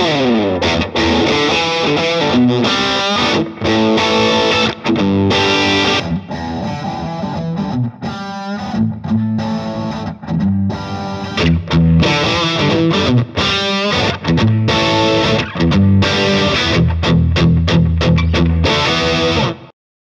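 Distorted electric guitar riff played through an open-back combo amp with two 12-inch speakers, recorded with microphones and played three times in a row: first through the front mic alone, then through the phase-reversed rear mic alone, then through both mics together. The middle pass is quieter, the last pass has the heaviest low end, and the playing cuts off suddenly just before the end.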